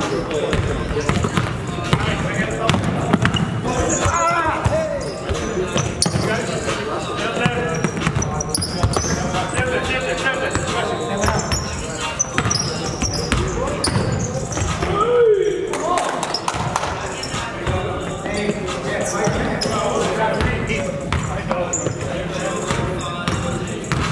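A basketball being dribbled and bounced on a hardwood gym court, with players' voices calling out throughout.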